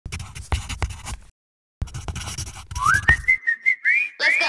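Scratchy, crackling noises that stop briefly and start again, then a whistled tune begins about two-thirds of the way in, sliding up into a few high notes.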